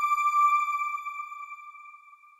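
A single ringing chime from a TV channel's logo sting: one clear tone with higher overtones, slowly fading away.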